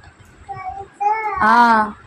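A toddler's voice giving a short sing-song answer: a brief sound about half a second in, then a longer word drawn out with a rise and fall in pitch that stops just before the end.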